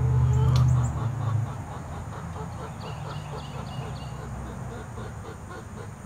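Faint, quick, repeated clucking from a backyard flock of chickens. A low rumble of wind on the microphone covers the first second and a half.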